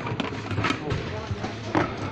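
Indistinct voices over a noisy background, with a few short clicks.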